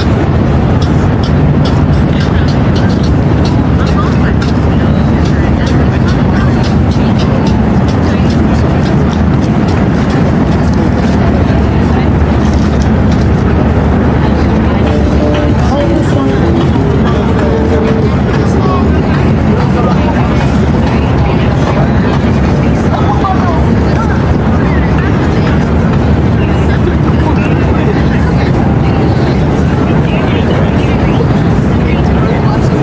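Loud, steady waterfront ambience: a continuous low rumble with indistinct voices of people talking mixed in.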